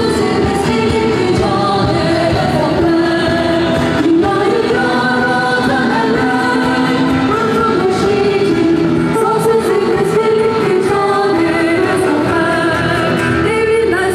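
Many voices singing a song together over music, loud and continuous, in a large crowded arena.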